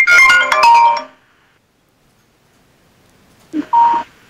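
Mobile phone ringtone playing a melody of bright electronic notes, cutting off about a second in. A short high beep follows near the end.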